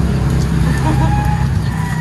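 A steady low engine hum, like a motor vehicle idling, with faint voices in the background.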